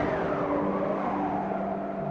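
A gust of howling wind, its pitch falling over about a second, over sustained notes of the film's orchestral score.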